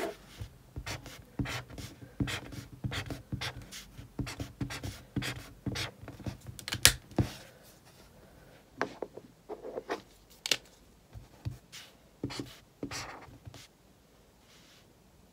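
Highlighter marking paper: a run of short, irregular scratchy strokes, densest in the first half, with one sharp click about seven seconds in and sparser strokes after.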